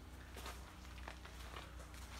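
Faint rustling and soft steps of someone moving among banana plants, with a low steady hum underneath.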